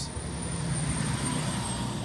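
Steady engine drone with a faint thin high tone that stops shortly before the end.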